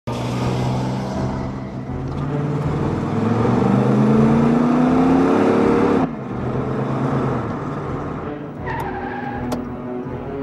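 Car engine accelerating hard, its note climbing steadily in pitch, then cutting off sharply about six seconds in to a lower, steadier engine hum. Two brief higher chirps sound near the end.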